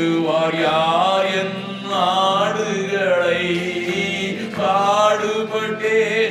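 A man singing a slow Tamil worship chant into a microphone over the church PA, in long drawn-out phrases that glide between notes.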